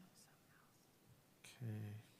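Near silence with faint room tone, then a person says a single "okay" near the end.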